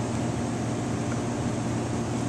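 Steady mechanical hum of kitchen ventilation: an even fan noise with a low tone held throughout.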